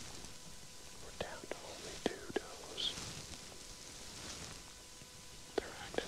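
A person whispering softly, with a few short, sharp clicks in between.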